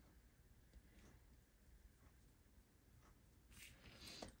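Near silence with a few faint, scattered taps of a Stampin' Blends alcohol marker's tip on cardstock as colour is dabbed into the segments of a stamped pole.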